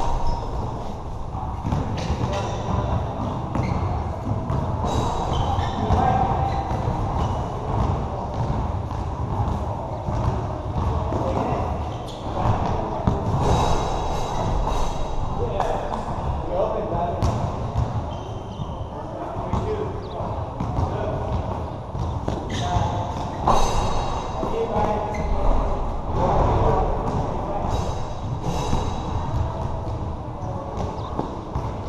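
Pickup basketball players calling out and talking during play, with a basketball bouncing and thudding on the court.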